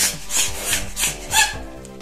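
Hand-held plunger balloon pump worked in quick strokes, each stroke a short rush of air as it inflates a latex balloon: about five strokes, stopping about one and a half seconds in. Background music plays underneath.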